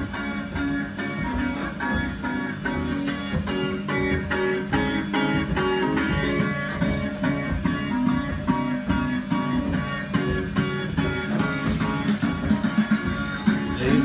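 Kiddie ride train's theme song playing through its speaker: an instrumental stretch of short, evenly paced notes over a steady beat.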